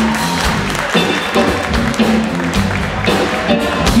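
Live blues trio of electric guitar, electric bass and drum kit playing a steady vamp, with the audience applauding over it.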